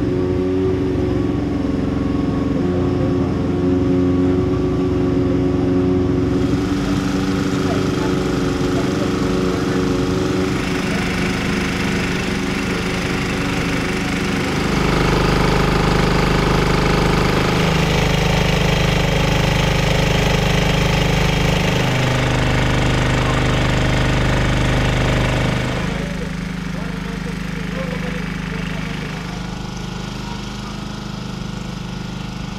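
An engine running steadily at a constant pitch, its sound changing a few times along the way.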